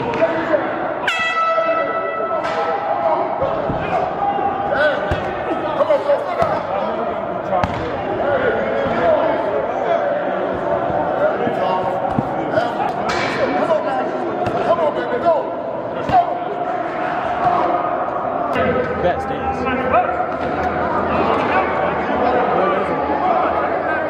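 Practice noise echoing in a large indoor hall: many indistinct voices with scattered thuds of players hitting tackling dummies. A single horn blast sounds about a second in, lasting about a second and a half.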